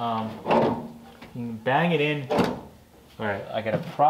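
Steel firewall panel clunking and knocking against the car body as it is worked into place by hand, with one sharp knock a little over two seconds in; men talking under it.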